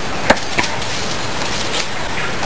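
A single sharp knock of a machete blade against a wooden chopping stump, then a fainter tap, over a steady background hiss.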